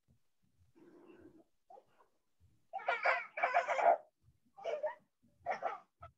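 A dog barking several times over a video-call microphone, in short loud bursts through the second half.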